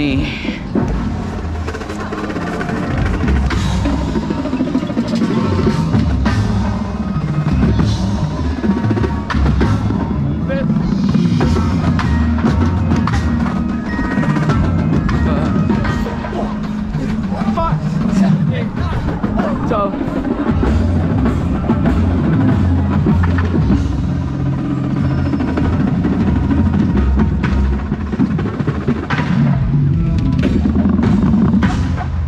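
Drum corps percussion playing continuously: drums and the front ensemble's keyboard mallet instruments, with voice in the amplified show sound, heard from among the marching members.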